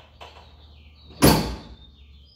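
Two light knocks, then a loud metal slam about a second in as a lifted Chevy K5 Blazer's tailgate is shut.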